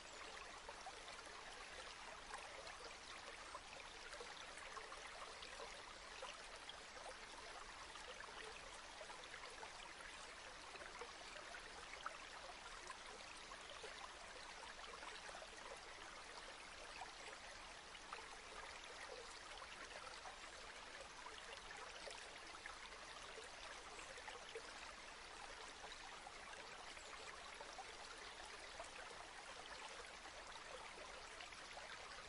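Faint, steady trickling of a small stream.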